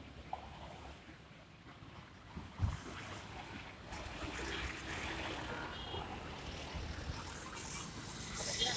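Faint outdoor ambience: a low, uneven rumble with a single short thump about two and a half seconds in.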